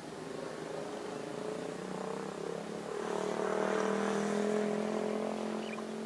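Hydraulic excavator's diesel engine working under load, its steady note growing louder about three seconds in, holding, then easing off near the end.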